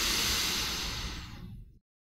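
A burst of loud hissing noise over a low rumble that fades over about a second and a half, then cuts off abruptly to dead silence.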